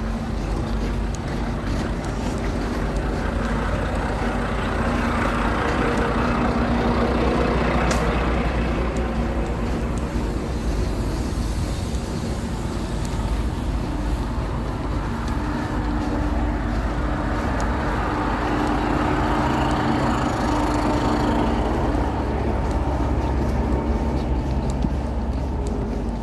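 Diesel engines of heavy trucks idling in a standing line of traffic: a steady low rumble with a hum, and a rushing noise that swells and fades twice.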